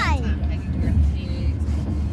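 Steady low rumble of a car heard from inside the cabin. A child's voice slides down in pitch and trails off at the very start.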